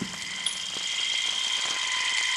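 Steady high-pitched whine of several held tones over a hiss, with a brief very high tone about half a second in.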